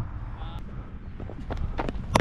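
Wind rumbling on a body-worn action camera's microphone, with a few faint taps and clicks in the second half.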